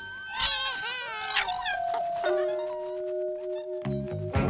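Background music with long held notes, over a chatter of high, squeaky, pitch-bending creature calls from a swarm of cartoon moths, thickest in the first second and a half.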